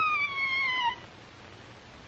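A single high-pitched cry that rises briefly, then slides down in pitch for about a second and breaks off.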